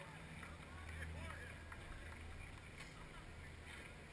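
Faint distant voices of people talking, over a low steady rumble of outdoor background noise.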